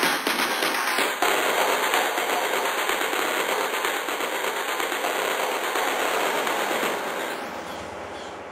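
Techno breakdown with the kick and bass dropped out, leaving a dense crackling noise texture. A swooshing filter sweep drops about a second in and climbs back near the end, as the level slowly eases down.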